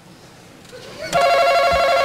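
Game show face-off buzzer sounding about a second in: a steady electronic tone, held, signalling that a contestant has hit the button to answer first.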